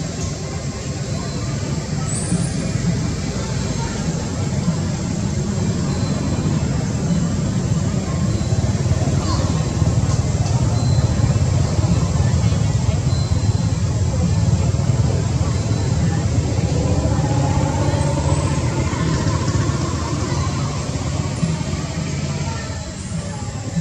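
Steady low rumbling background noise with indistinct voices in it; faint wavering pitched sounds come through in the second half.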